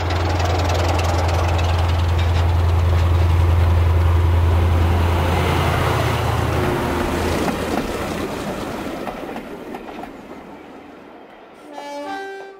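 Diesel train passing by: a steady low engine drone with wheel and rail noise that swells, peaks about a third of the way in and fades away, the drone stopping a little over halfway through. A short pitched sound follows at the very end.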